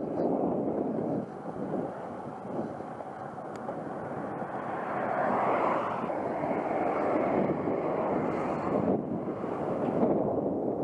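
Wind rushing over an action camera's microphone, with tyre noise from a road bike rolling on asphalt: an even rushing noise that grows somewhat louder about halfway through.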